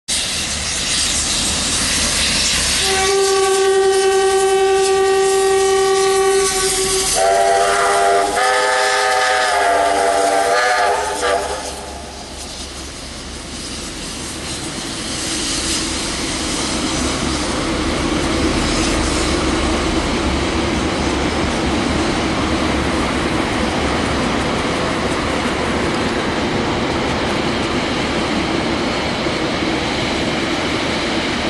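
Locomotives of a departing excursion train sound a long single-note blast of about four seconds, then a chord of several notes for about four seconds more. After that comes the steady rumble and wheel noise of the train running past on the rails.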